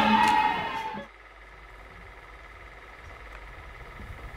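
A woman's voice, drawn out and fading away over the first second, followed by a faint steady background with a few weak sustained tones.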